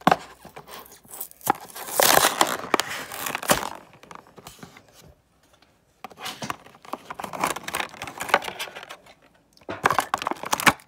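Plastic blister pack and card backing of a toy car's packaging being pulled open by hand: crinkling and crackling plastic with tearing, loudest about two to four seconds in. After a brief pause there are more crackles and small clicks.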